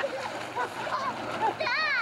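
Water splashing around people wading in shallow lake water, with short voice sounds and a child's high squeal near the end.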